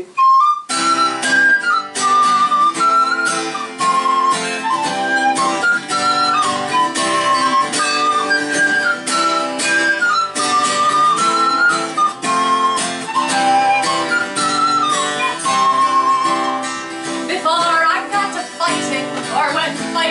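A recorder playing a lilting folk melody over a strummed acoustic guitar, the instrumental introduction to a song.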